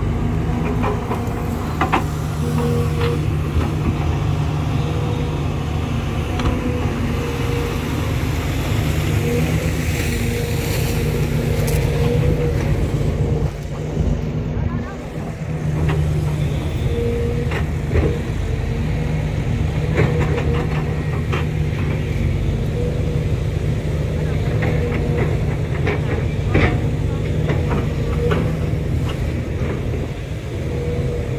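SANY hydraulic excavator's diesel engine running steadily, a low drone with a steady hum above it, dipping briefly about halfway through, with a few sharp clicks and knocks.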